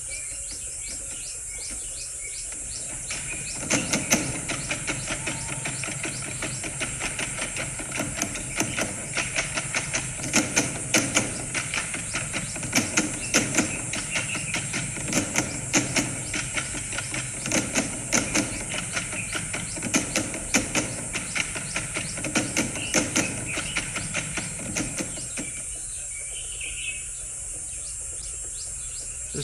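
Irregular sharp clicks and crunching knocks, several a second at times, over a steady high hiss. The clicking starts about three and a half seconds in and stops a couple of seconds before the end.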